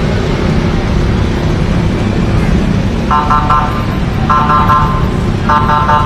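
City road traffic: motorcycles and cars passing steadily. In the second half a pitched beep sounds three times, evenly spaced about a second apart.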